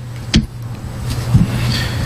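A steady low hum with room noise under it, a short sharp knock about a third of a second in and a softer thump later.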